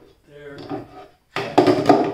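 Clamps clattering as they are rummaged out of a drawer under the saw: a short, loud clatter about one and a half seconds in, with faint muttering before it.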